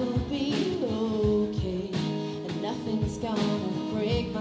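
Live country band playing: a woman singing a held, wavering vocal line over strummed acoustic guitar, with a drum kit keeping a steady beat.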